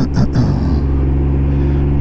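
Can-Am Ryker 900's three-cylinder Rotax engine running steadily under way, with the rider's cough at the start.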